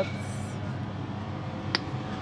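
A can being taken off a wire cooler shelf: one sharp click near the end as the aluminium can knocks against the rack, over a steady low hum.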